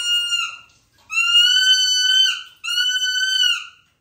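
Three long, steady, high-pitched whistle-like notes, each about a second long and dipping slightly in pitch as it ends, with short gaps between them.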